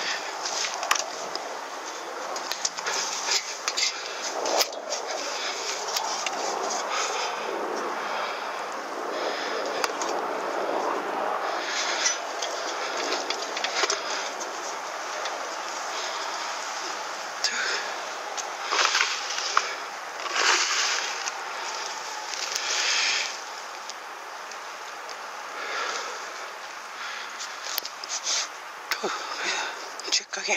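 Rustling and handling noise as pine branches brush close to a handheld camera, in short scrapes over a steady hiss.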